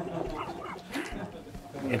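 Faint voices: low, scattered talk with short pitched vocal fragments, between louder speech.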